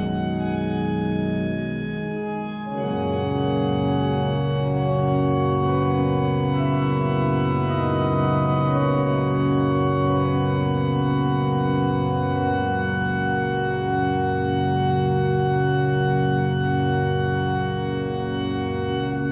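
Large church pipe organ playing slow, sustained chords as improvised film accompaniment. About three seconds in, a fuller chord with deep bass notes comes in and is held, with slow shifts in the upper notes.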